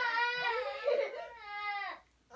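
A toddler crying: one long, high-pitched, wavering cry that breaks off at the end.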